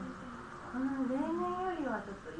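Women talking, with a long drawn-out vocal exclamation that rises a little, holds, then falls in pitch near the end.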